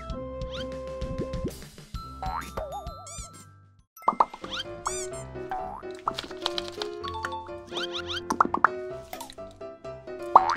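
Bright, cartoonish background music with short sound effects that slide up and down in pitch. About four seconds in it fades almost to silence, then a new bouncy tune starts.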